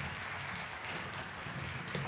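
Audience applauding, a steady, fairly soft clapping.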